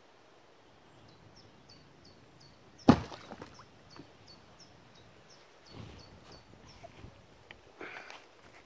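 A single sharp thump about three seconds in, over a run of short high chirps repeating about three times a second.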